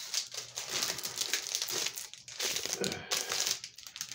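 Plastic packaging crinkling and rustling as a bagged graded comic book is handled, with a few light knocks.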